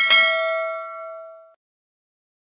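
Notification-bell sound effect: a single bell ding, struck once and ringing out, fading away over about a second and a half.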